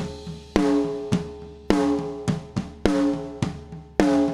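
A recorded snare drum track played back through a compressor. Strong hits come about once a second, each leaving a ringing drum tone, with lighter hits between them. The compressor's attack is being lengthened, so more of the snap of each hit gets through before the compressor clamps down.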